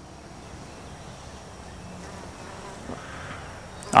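An insect buzzing in the background, its hum swelling a little in the second half, with a light tap about three seconds in.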